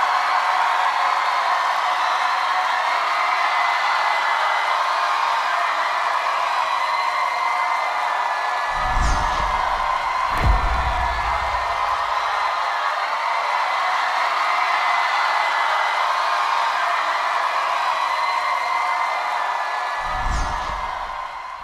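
A crowd cheering and screaming steadily. Two low booms come about nine and ten and a half seconds in.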